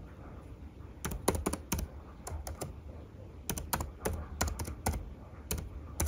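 Typing on a computer keyboard: irregular keystrokes that come in short quick runs separated by brief pauses.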